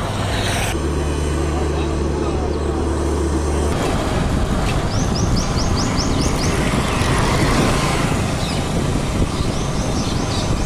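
Roadside traffic noise with a motor vehicle's engine running: a steady low hum for the first few seconds gives way to a general roar of passing traffic. A quick run of short high chirps comes about five seconds in and again near the end.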